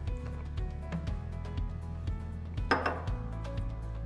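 Small knocks and clinks of a plastic wash bottle and the sensor's plastic restrictor cup being handled while DI water is rinsed into the cup, with one louder clunk about two thirds of the way in. Soft background music with a steady bass underneath.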